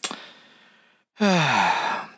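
A person's long, breathy sigh that falls in pitch, a sigh of dejection. Before it there is a sudden breathy noise that fades over about a second.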